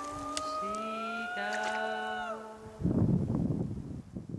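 Background music: an Estonian runic song (regilaul) sung in long held notes, one note gliding slowly upward before dropping away a little past two seconds in. From about three seconds in, a loud burst of rough rustling noise covers it.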